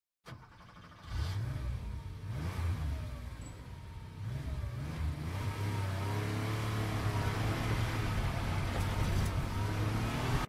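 A car engine revving: its pitch rises and falls a few times, then settles into a steady drone for the second half.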